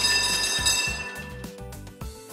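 A cartoon tram sound effect over background music with a steady beat: a sudden bright hiss with ringing tones starts at the outset and fades away over about a second and a half.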